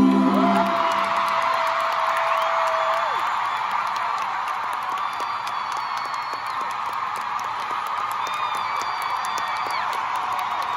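Arena crowd cheering and screaming as a song ends, a steady roar with long high-pitched shrieks over it.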